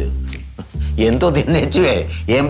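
Background music cue: a steady low drone, with a wavering, warbling melody coming in about halfway through.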